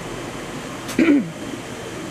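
A woman clears her throat once, a short voiced catch about a second in, over a steady background hiss.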